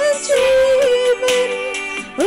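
A woman singing a worship song, holding long steady notes with small turns in pitch.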